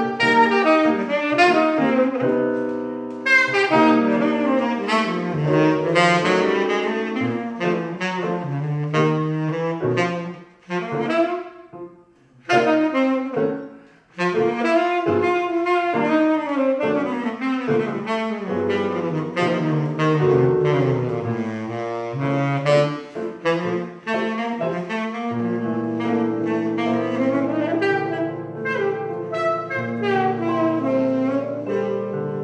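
Saxophone and digital stage piano playing jazz together, the saxophone holding long melody notes over piano chords. The playing thins out briefly about a third of the way through, then picks up again.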